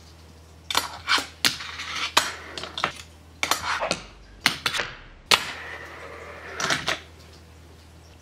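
A fingerboard's deck and wheels clacking sharply on a tabletop and a ledge, about a dozen irregular clicks from repeated nollie heelflip 5-0 grind attempts. A short scrape of the trucks grinding along the ledge edge comes near the end.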